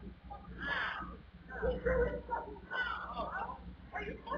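Distant raised voices, harsh shouting that can't be made out, over a steady low electrical hum.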